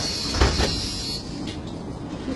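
City bus doors knocking shut, two or three thuds about half a second in, over a steady hiss that cuts off a little after a second.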